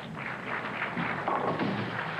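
Bowling ball rolling into the rack and crashing through the pins, a dense clatter of pins knocking against each other and the pit that lasts over a second.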